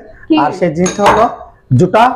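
A small bowl clinking against a large stainless-steel plate as it is set down and stacked on it. There are a few sharp clinks, the loudest about a second in.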